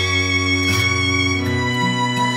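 Bowed strings, a cello among them, playing long held notes in a slow instrumental passage, with the notes changing about three-quarters of a second in and again near the end.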